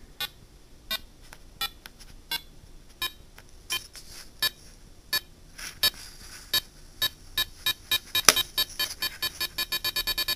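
A piezo speaker driven by a PICAXE-08M2 chip sounds short electronic beeps, about one every 0.7 s at first. Over the last three seconds they come quicker and quicker, reaching several a second, as the rate knob is turned.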